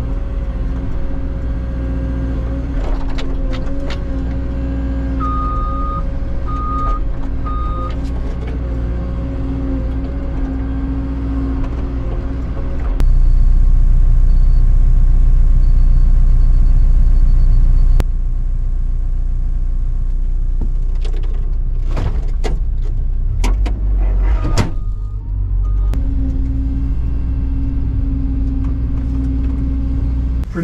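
CAT 314 hydraulic excavator heard from inside its cab while digging: a steady engine drone with the hydraulics working, turning louder for about five seconds midway. Three short beeps sound a few seconds in, and a cluster of sharp knocks and clicks comes later.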